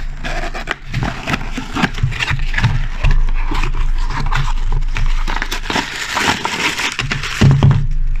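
Clear plastic bags crinkling and rustling as hands rummage through them, with small clicks from the handling, loudest a little past the middle.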